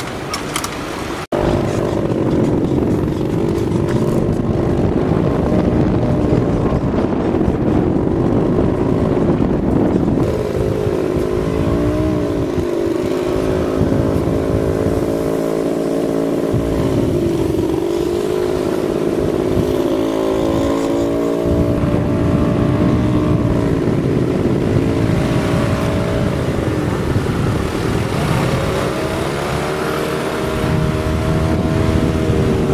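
A motor vehicle engine running loud and close, its pitch dipping and rising again several times, with a sudden break about a second in.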